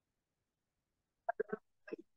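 Near silence, then a person's voice in four short clipped sounds in quick succession near the end.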